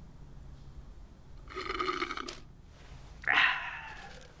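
A soft drink sucked up through a straw from a paper cup: a slurp about a second and a half in, lasting under a second. Near the end comes a louder, breathy sound.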